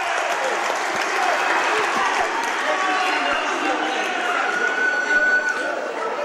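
Gymnasium crowd at a basketball game: a steady din of many voices calling out, mixed with clapping, as a foul is called. A single held tone stands out from the din near the end.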